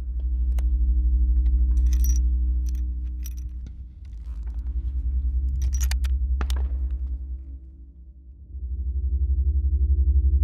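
A low, swelling music drone with a handful of sharp metallic clicks and clinks over it, from a bolt-action target rifle's bolt and action being handled, most of them in the first seven seconds.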